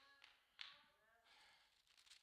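Near silence: a single faint tap about half a second in, followed by a faint, barely audible voice and a soft hiss like a breath.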